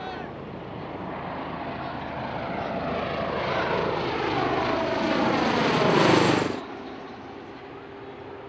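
A Bell Boeing MV-22 Osprey tiltrotor on a low pass: the beat of its proprotors and the sound of its turboshaft engines grow steadily louder, falling in pitch as it closes in. About six and a half seconds in the sound drops suddenly to a much quieter, steady level.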